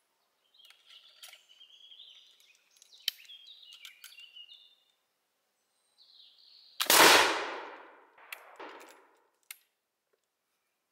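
Steel ramrod clinking and scraping against the barrel and stock of a flintlock M1786 French light cavalry musketoon as loading is finished. About seven seconds in, the flintlock fires: a quick snap of the lock just ahead of one loud black-powder shot that rings out and fades over about a second.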